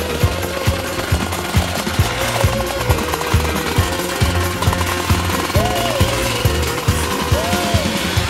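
Electronic dance music with a fast steady beat, about two beats a second, under a wavering synth melody.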